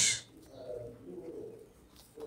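A bird cooing faintly in the background, one low wavering call of about a second and a half that starts about half a second in.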